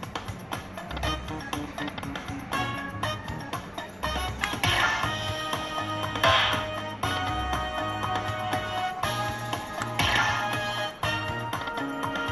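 Lightning Link slot machine's bonus music playing with a low pulsing beat, with louder chiming jingles three times, about 4.5, 6.5 and 10 seconds in, as chip symbols land on the reels and the free-spin count goes back up.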